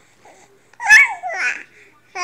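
Young baby vocalizing: a short, high-pitched squealing coo about a second in, followed by a softer sound.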